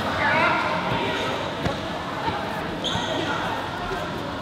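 Karate students training on mats in a large, echoing sports hall: a murmur of voices with scattered thumps of feet and strikes. A brief high-pitched call sounds just before three seconds in.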